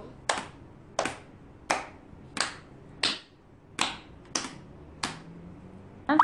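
A child's hand claps, eight even claps about one every 0.7 seconds, keeping a steady beat in a note-value rhythm exercise.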